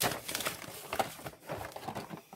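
Paper mailing envelope and newspaper packing rustling and crinkling as a boxed Hot Wheels five-pack is slid out of it, a sharp rustle at the start and then irregular scraping.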